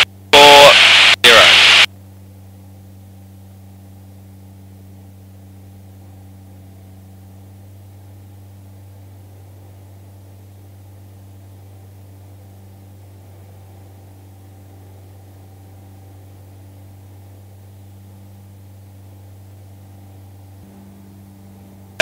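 Steady low drone of a Jabiru light aircraft's engine in flight, heard through the headset intercom, with a slight change in tone near the end.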